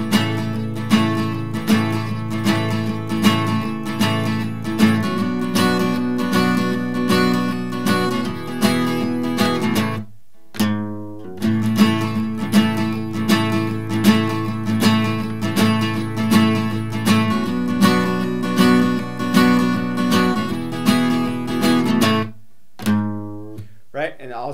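Steel-string acoustic guitar strummed with a pick in a steady up-and-down pattern, playing the verse's chord sequence of G, A minor and D. There are two short breaks, one about ten seconds in and one near the end.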